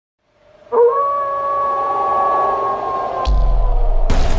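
Intro sound design: a long held eerie tone with several pitches sounding together, starting sharply after a brief fade-in and sinking slightly near the end, joined about three seconds in by a deep low rumble.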